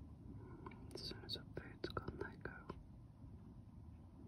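Faint whispered speech: a few soft, breathy words between about one and three seconds in.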